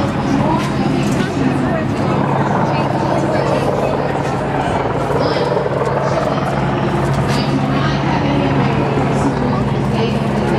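A steady low mechanical drone, a few even tones held without change, under indistinct background voices.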